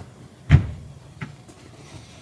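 A hand slapping a large plush teddy bear to beat the dust out of it: one loud dull thump about half a second in, then a fainter pat a little later.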